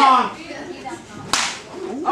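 A single sharp slap about a second and a half in: an open-hand chop landing on a wrestler's bare chest.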